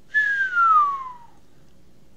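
A single whistled tone that glides steadily down in pitch for about a second, then fades.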